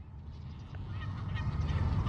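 Faint honking of birds over a low outdoor rumble that slowly grows louder.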